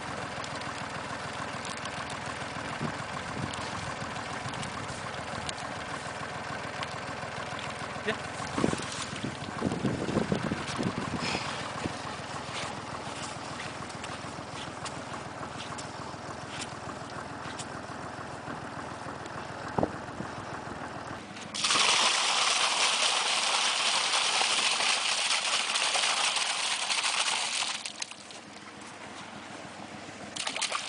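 A tub of water and live roach tipped into a pond: a loud rush of pouring, splashing water starts suddenly about three-quarters of the way in and stops about six seconds later. Before that there are quieter outdoor handling noises with a few knocks.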